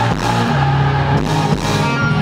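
Pop-punk band playing live: electric guitars, bass guitar and drum kit at full volume.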